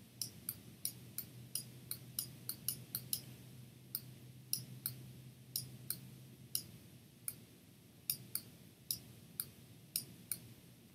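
Computer mouse button clicking in irregular runs, about two to three clicks a second, as brush strokes are dabbed on while editing a photo. A faint low hum sits underneath and fades out about two-thirds of the way through.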